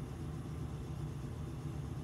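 Steady low background hum with faint hiss, no distinct events.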